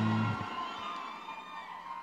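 A held low music chord from the concert's sound system stops about a third of a second in. Faint crowd cheering and voices follow and fade out.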